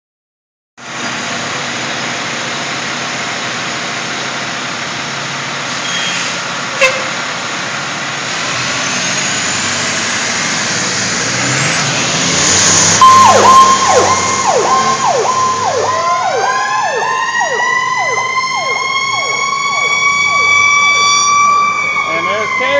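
A heavy rescue fire truck's diesel engine running as it pulls out, with a sharp click about seven seconds in. About halfway through its siren starts, a fast repeating yelp, and a few seconds later a second, wailing siren joins it and rises steadily in pitch.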